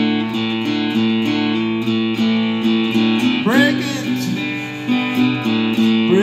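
Guitar-led music with chords strummed in a steady rhythm, and a short wordless vocal swoop rising about halfway through.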